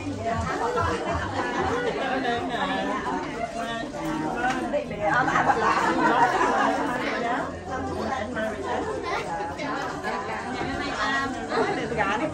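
Several people talking over one another: overlapping chatter, loudest a little before the middle.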